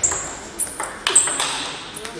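Table tennis ball hits: a string of sharp, high ringing pings, the loudest just after the start and about a second in.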